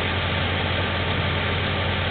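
A vehicle engine idling with a steady low hum.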